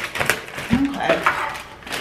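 Plastic poly mailer bag crinkling and rustling as it is handled and pulled open, in short crackly bursts, with a brief vocal sound a little under a second in.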